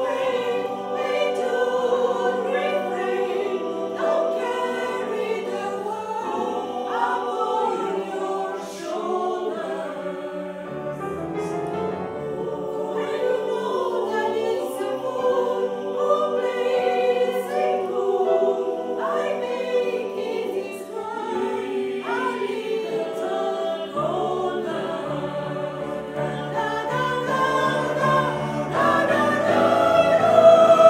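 Mixed choir of women's and men's voices singing together in several parts, holding sustained chords that shift from note to note.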